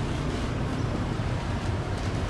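Steady low rumble of a tram running along the track, heard from inside the car.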